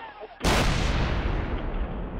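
A single loud blast about half a second in, the suicide bomb explosion at Benazir Bhutto's rally. It is heard through an amateur camera's microphone, with a heavy rumbling tail that fades slowly.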